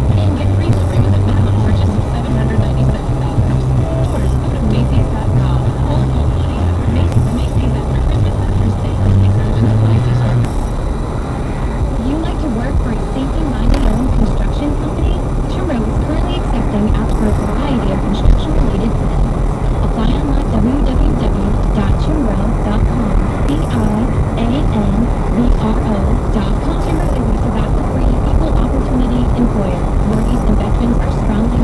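Car cabin sound while driving: steady road and engine noise, with the car radio playing music and voices. A deep hum drops away about ten seconds in, and a faint swish repeats about every three seconds.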